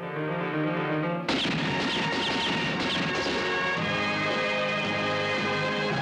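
Spaghetti western film score music with held chords, cut across about a second in by a sudden loud crash that leads into a dense, noisy passage before the held chords return.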